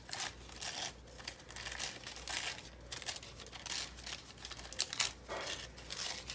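Tissue paper crinkling and rustling in irregular bursts as it is handled and pressed onto the page.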